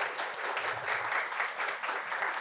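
Audience applauding: many hands clapping at once, without a break.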